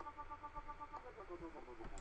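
Faint synthesizer notes from NanoStudio's Eden synth with a harp waveform, pulsing rhythmically in a dubstep-style wobble from a sine LFO sweeping the filter. A higher note comes first, then a lower note about a second in.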